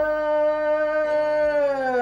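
A man singing one long held note in Indian classical style. The pitch begins to slide down near the end.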